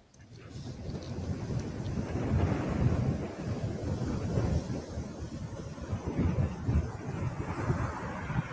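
Rushing, rumbling noise with no melody, like wind or surf, from the opening soundtrack of a video being played back. It fades in over the first two seconds and then holds fairly steady.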